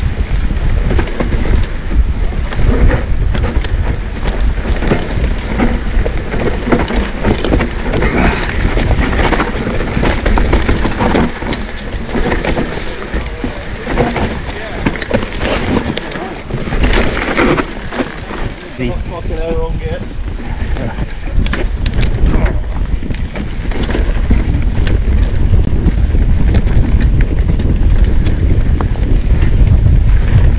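Riding noise from an Orange P7 steel hardtail mountain bike descending a dirt forest trail: tyres rolling over dirt and roots, with constant rattles and knocks from the bike and a low wind rumble on the microphone.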